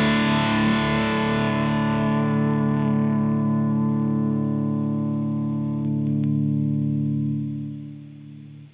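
Fender Custom Shop 1960 Closet Classic Stratocaster electric guitar through an overdrive pedal and a 1963 Fender Vibroverb amp: one held, overdriven chord left to ring, its brightness slowly dying away until it fades out near the end.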